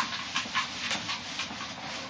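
Felt whiteboard eraser rubbing across a whiteboard in quick back-and-forth strokes, a dry swishing about four or five times a second, wiping off marker lines.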